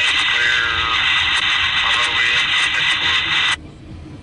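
Railroad scanner radio transmission: a loud burst of static hiss with a faint, garbled voice in it, cutting off suddenly about three and a half seconds in as the squelch closes. A low rumble from the passing freight train carries on underneath.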